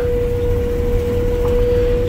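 Combine harvesting soybeans, heard from inside the cab: a steady low machinery rumble with a constant high-pitched whine running through it.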